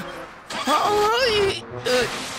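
A cartoon character's wordless vocal sound with wavering pitch. It starts about half a second in and lasts about a second, and a short second one comes near the end.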